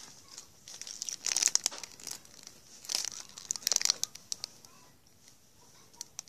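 Reese's candy wrapper crinkling as it is handled, in bursts about one to two and three to four seconds in, with a few small crackles after.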